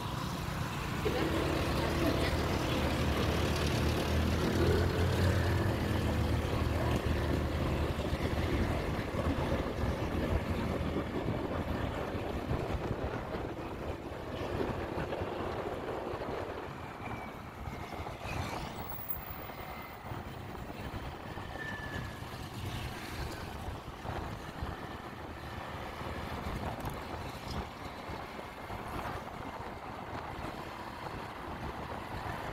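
Motorcycle engine heard from the rider's seat, with wind and road noise. The engine is strongest for roughly the first ten seconds while the bike pulls away, then eases off under a steady rush of wind while cruising.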